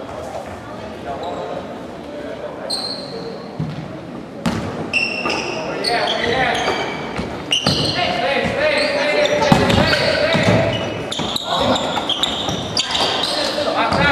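Basketball bouncing on a gym floor during a game, with players' and spectators' voices that grow louder about four seconds in.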